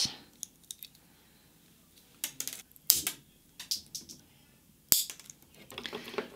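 Handheld nail clippers snipping off long fingernails: a string of sharp, irregular clicks, the loudest about three and five seconds in.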